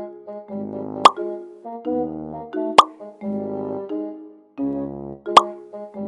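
Light keyboard background music in short repeating phrases, with three short, sharp pops on top: about a second in, near the middle and near the end.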